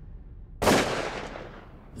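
A single shot from a scoped hunting rifle about half a second in: a sharp crack whose report fades away over about a second.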